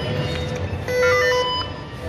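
Electronic ticket scanner at an entrance turnstile sounding a short confirmation chime as a ticket is scanned: a few notes stepping down in pitch, about a second in, lasting under a second. Background music plays throughout.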